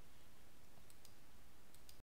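Faint steady background hiss and hum, with four faint short clicks in two quick pairs: one pair about a second in, the other near the end.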